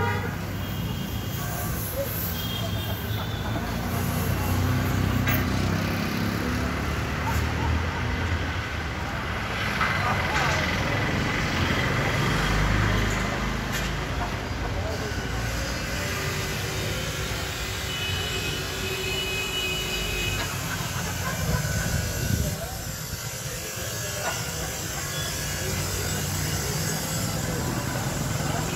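Indistinct background voices over a steady low engine rumble.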